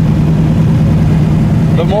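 Twin-turbo Chevy S10 pickup's carbureted engine heard from inside the cab, cruising at steady throttle: a constant, unchanging drone over road rumble.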